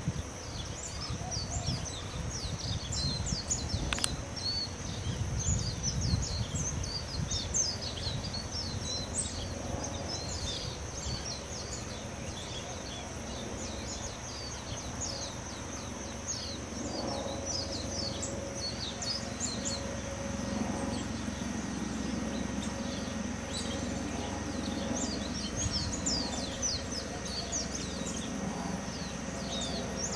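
Outdoor ambience with many small birds chirping and twittering throughout, short quick calls over a steady background. A low rumble runs under the first part and eases off after about ten seconds.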